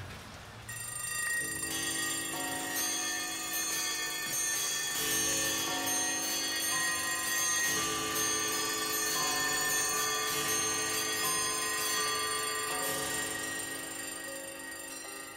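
Bell-like chime tones, several notes ringing on together, with new notes coming in every second or two.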